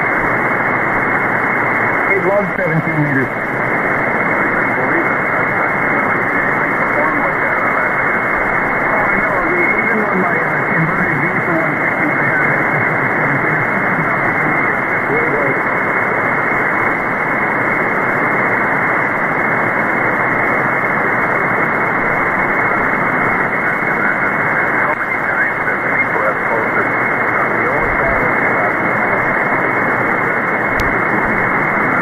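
Weak single-sideband voice of a ham operator on the 160-metre band, received on an SDRplay RSPduo and nearly buried in steady hiss and static. The audio is narrow and muffled, and the voice comes through in faint snatches, clearest about two seconds in and again around ten seconds.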